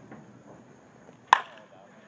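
A baseball bat hitting a pitched ball: one sharp crack a little over a second in, with a brief ring.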